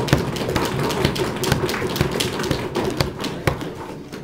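Audience knocking on desks in applause, a dense, irregular patter of many knocks that dies down near the end.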